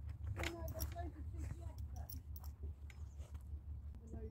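Quiet, faint talking in the first half, with scattered light clicks and handling noises over a steady low rumble.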